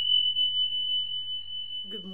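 A single high, pure electronic tone that strikes sharply and rings on steadily while slowly fading, a sound effect accompanying an animated subscribe button. A woman's voice comes in near the end.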